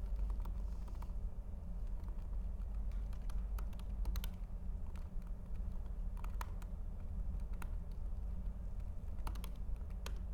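Typing on an Apple laptop keyboard: quick, irregular keystroke clicks, some in short runs, with a steady low hum underneath.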